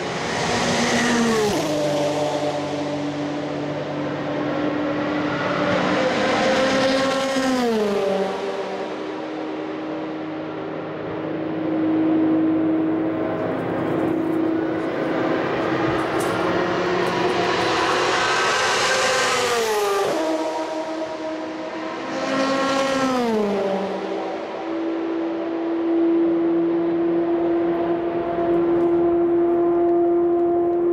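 Le Mans endurance race cars passing flat out at over 200 mph. There are four pass-bys, each engine note falling steeply in pitch as the car goes by, and the engines of the next cars are heard coming and going between them.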